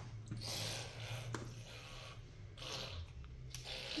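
Quiet handling and eating of a dark chocolate bar: soft rustles about once a second and a sharp click about a second and a half in, as pieces are broken off and bitten.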